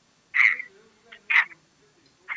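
Two short, thin voice sounds from a mobile phone's speakerphone: the other party on the call, heard through the small speaker.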